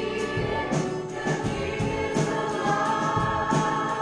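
Live worship band playing a song with singing: acoustic and electric guitars over a steady drum beat.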